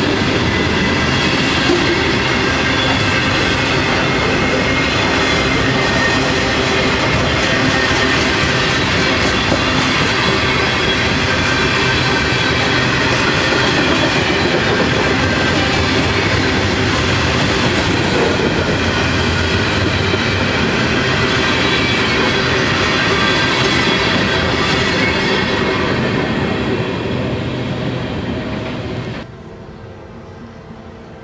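A freight train's cars (covered hoppers, boxcars and autoracks) rolling past, steel wheels clattering over the rail joints with a thin wheel squeal. The sound eases slightly near the end, then cuts off abruptly.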